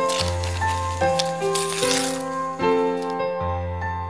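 Background piano music with a deep bass note under it, the chords changing about every second. A hissing, rattling layer sits over the music for the first three seconds, then cuts off.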